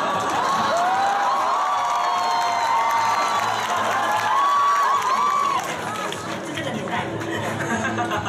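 Audience screaming and cheering, many high-pitched voices overlapping for about five seconds before dying down.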